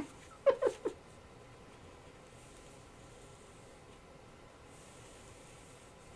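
A brief pitched vocal sound just under a second long, about half a second in, then quiet, steady room tone.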